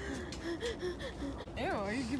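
A young woman breathing funny: a run of short, gasping breaths with a voiced edge, ending near the end in a longer one that rises and falls in pitch.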